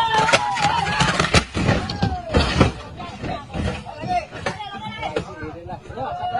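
A group of men's voices calling and shouting together while they heave on something, with several sharp knocks in the first few seconds.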